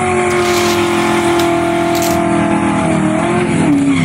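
Racing-car sound effect laid over the race: a loud, steady engine note that sags in pitch near the end and cuts off abruptly.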